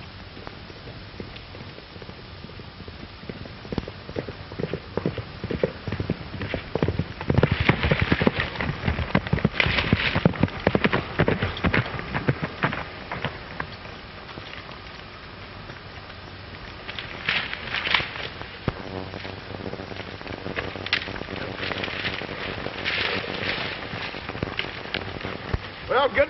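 Hoofbeats of a horse galloping on dirt. They come as an irregular, crackling patter, loudest a little over a quarter of the way in and again through the second half, over the steady hiss of an old optical film soundtrack.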